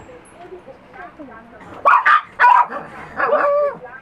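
A dog barking: two short barks about two seconds in, then a longer, drawn-out bark near the end.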